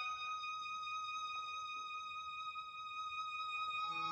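String quartet playing softly, a violin holding one high note steady.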